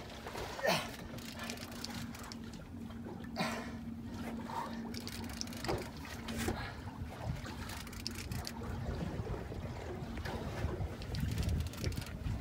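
A fishing boat's motor hums steadily under water and wind noise, with a few short sharp noises; the hum fades out about three-quarters of the way through.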